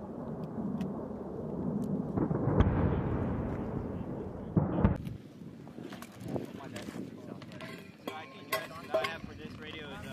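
A deep, rolling outdoor rumble that swells to a peak a couple of seconds in and cuts off suddenly about five seconds in. After it come quieter sounds: scattered clicks and faint voices.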